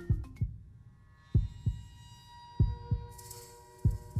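Film score: low double thumps like a heartbeat, repeating about once every second and a quarter, under a sustained synth tone, as mallet-percussion title music dies away at the start.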